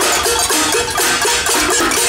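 Metal pots and pans beaten by a crowd, a dense, continuous clatter of rapid metallic strikes with ringing pitched tones.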